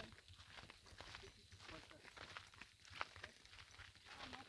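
Faint, irregular footsteps of several people walking on a dry dirt path scattered with small stones.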